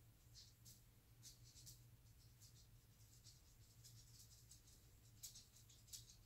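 Near silence: room tone with a steady low hum and faint scattered small ticks and rustles.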